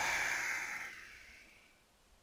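A man's long breath out, a sigh that fades away over about a second and a half.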